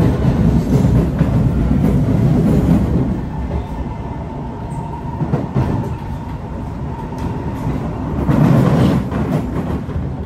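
Steady rumble of an SMRT C151 metro train under way, heard from inside the car. It is louder for the first three seconds, eases off, and swells again near the end. A thin steady tone comes in about halfway through.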